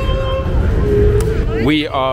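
Violin playing long held notes that step between pitches, over a steady low rumble. A man's voice starts near the end.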